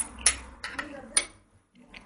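A metal spoon knocking against a glass bowl of thin tomato sauce: about four short clinks in the first second and a bit.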